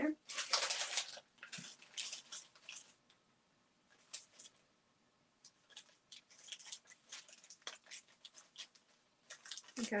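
Handling sounds of costume jewelry and small plastic bags being sorted: short rustles and crinkles, loudest in the first second, then a run of quick soft rustles in the second half.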